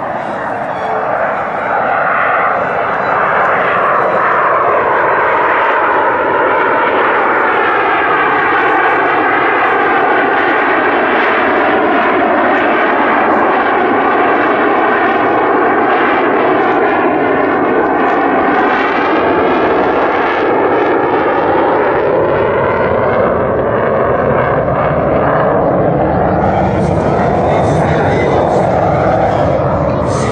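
The twin General Electric F404 turbofans of a CF-188 Hornet fighter jet run loud and steady as it passes overhead. The noise builds over the first few seconds and holds, with a sweeping, phasing tone that falls and then rises again as the jet goes by. Near the end a harsher, hissing edge comes in as the afterburners light.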